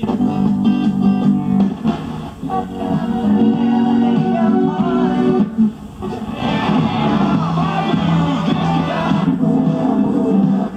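Guitar music from an FM broadcast playing through a 1965 Chevrolet full-size Delco AM-FM radio and its 8-ohm speaker, clean with no crackling. The music dips briefly twice as the dial is turned.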